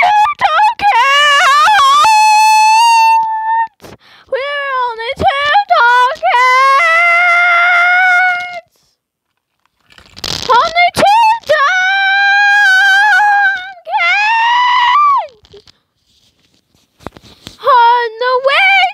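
A girl's wordless, high-pitched vocalizing in the manner of a singer's ad-libs: long held notes that waver and slide in pitch, loud and close to the microphone. It comes in three phrases with short pauses between them, the third ending in a falling slide, and a fourth starts near the end.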